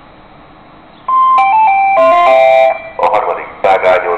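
Railway station public-address chime: a short run of stepped ding-dong tones ending on a held chord, followed about a second later by the start of a spoken announcement over the loudspeakers.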